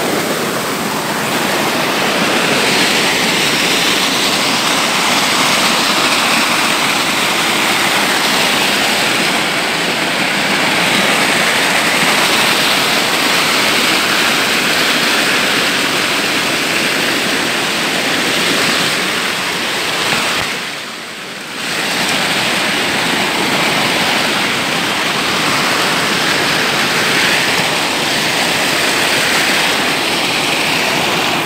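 A small rocky mountain stream rushes and splashes down a cascade of white water in a loud, steady noise. It dips briefly for about a second roughly two-thirds of the way through.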